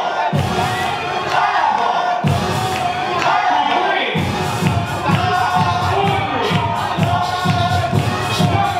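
A crowd cheering and shouting over loud dance music. The music's beat runs steadily from about four seconds in.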